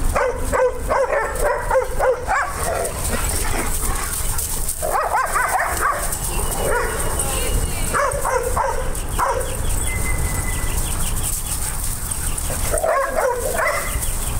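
Dogs barking and yipping in play, in several bursts of a second or two each with pauses between.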